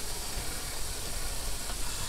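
Steady outdoor background noise: an even hiss with an uneven low rumble beneath it.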